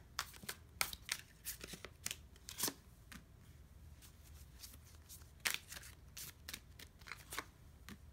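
Tarot cards being handled: drawn from a deck and laid down on a spread. There is a scatter of soft clicks and slaps of card stock, the loudest about two and a half and five and a half seconds in.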